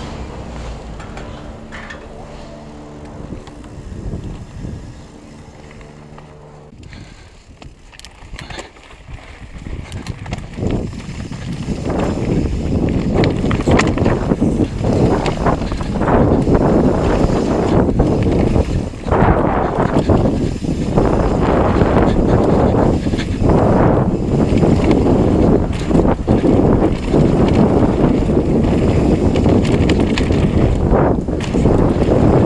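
Downhill mountain bike ridden fast down a dirt and rocky trail: a loud, constant mix of wind buffeting the camera microphone, knobbly tyres on gravel and chain and suspension rattling, with frequent knocks over rocks and roots. In the first few seconds, before the ride picks up speed, a steady machinery hum from the chairlift station.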